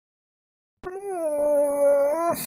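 A dog howling once, one drawn-out whining call of about a second and a half that dips slightly in pitch, holds steady and cuts off suddenly.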